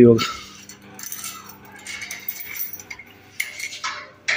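Padlock and latch on a metal gate being worked by hand: light metallic clinks and rattles, with a louder clank about three and a half seconds in.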